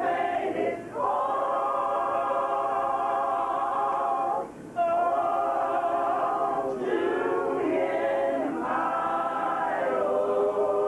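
Adult gospel choir of mixed male and female voices singing a cappella, holding long sustained chords, with brief breaks between phrases about a second in and again midway.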